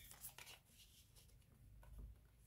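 Near silence, with a few faint, brief clicks of tarot cards being handled and a card laid on the table near the end.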